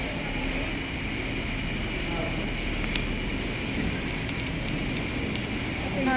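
Steady background hum with faint, indistinct voices in the distance and a single light click about three seconds in.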